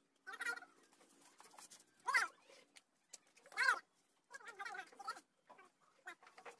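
A domestic animal calling: about four short calls that bend in pitch, the two in the middle the loudest.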